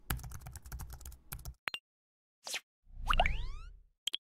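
Designed sound effects for an animated logo: a rapid run of clicks over a low rumble, a short whoosh, then the loudest part, a hit with a deep boom and rising sweeping tones that fades out.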